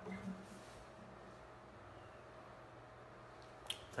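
Quiet room tone with a faint steady hum, a brief low sound just after the start, and one sharp click near the end.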